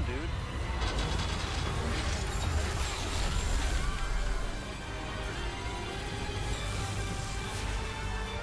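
TV drama soundtrack: dramatic background music with a rushing, hissing sound effect that swells over the first four seconds or so, then settles back to the music bed.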